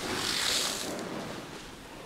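100,000 Orbeez gel beads poured in a stream from a plastic tote onto a concrete floor: a rushing hiss, loudest in the first second and fading away.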